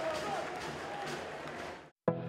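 Match-ground ambience at a football game: distant shouting voices over a low crowd hum, fading away near the end.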